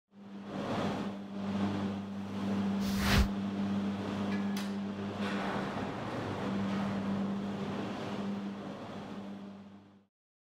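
Steady mechanical hum under a rushing noise, with a sharp clunk about three seconds in and a lighter one a little later, fading out near the end.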